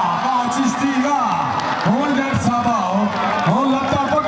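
A man's voice speaking without a break, the pitch swooping up and down.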